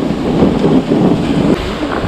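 Snowboard sliding and scraping over hard-packed groomed snow, a loud, rough, uneven crunching noise, with wind on the action-camera microphone.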